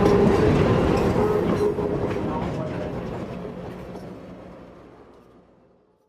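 Diesel switcher locomotive and train passing close by, engine running and wheels clicking on the rails. The sound fades steadily away to silence near the end.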